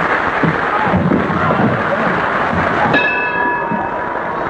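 Studio audience applause and laughter on an old television broadcast soundtrack. About three seconds in, a held high musical note joins it.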